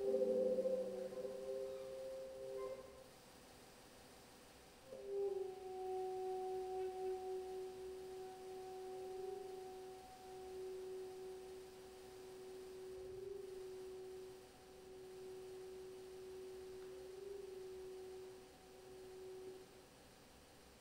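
Saxophone playing soft, nearly pure sustained notes: a few overlapping tones in the first three seconds, then, after a short pause, one low note held from about five seconds in until just before the end, broken by three brief gaps for breath.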